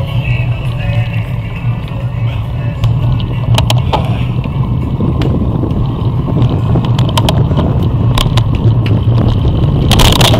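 Steady low rumble of wind and tyre noise on a bicycle-mounted camera as the bike rolls along pavement, growing a little louder toward the end, with a few sharp clicks from the bike or mount.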